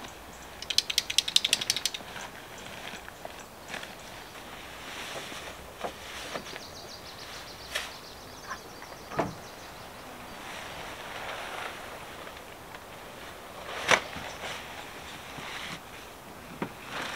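Someone handling camp gear and a fabric cover draped over an SUV's open rear hatch: a quick run of sharp clicks about a second in, then soft fabric rustling and scattered light knocks, with one sharp knock near the end.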